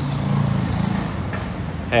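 A motor vehicle's engine running with a low steady hum that fades after about a second, over street traffic noise.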